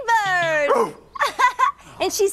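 Dog-like vocalizing from the show's hound character: one long whine falling in pitch, then a few short yips about a second in.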